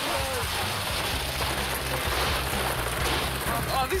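Steady, dense clatter of thousands of plastic ping-pong balls being shovelled and tipped into wheelbarrows, over a low background music bed, with a voice near the end.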